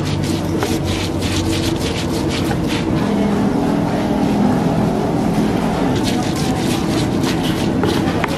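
A stone pestle scraping and crushing green chilies with salt in a rough stone mortar (cobek and ulekan), in quick repeated strokes. The strokes come thickest at the start and near the end and thin out in the middle, over a steady low hum.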